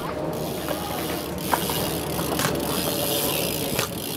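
A BMX bike's freewheel hub ticking as it rolls, over a steady hiss, with a few sharp clicks.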